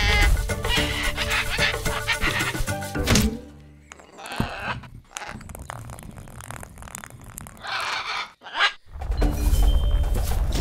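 Cartoon soundtrack: background music that stops with a thud about three seconds in, followed by a quieter stretch with a few short animal-like cartoon dinosaur calls; the music starts again near the end.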